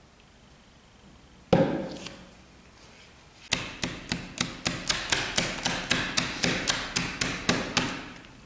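A plastic plate knocked repeatedly against a tabletop, about four to five knocks a second, to level a freshly poured layer of tempered white chocolate. A single sharp knock comes about a second and a half in, before the run of knocks.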